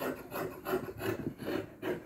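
Scissors snipping through sheer organza fabric on a table, a steady run of short crunching cuts about three a second.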